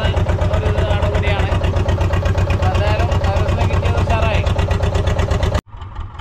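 A boat engine running steadily with a rapid, even beat and a strong low rumble, with voices talking over it. The sound cuts off suddenly about five and a half seconds in, and a quieter engine-like hum follows.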